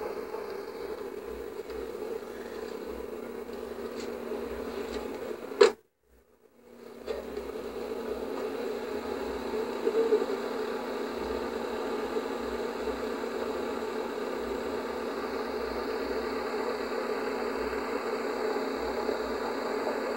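Steady hum of a car engine running, heard from inside the cabin. About six seconds in, a sharp click is followed by about a second of silence where the recording breaks, then the hum resumes.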